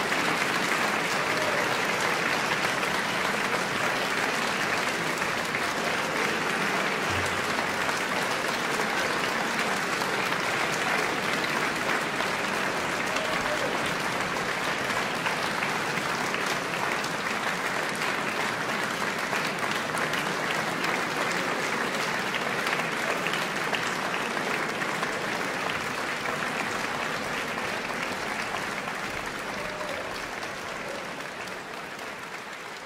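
Audience applauding steadily, the clapping slowly tapering off near the end.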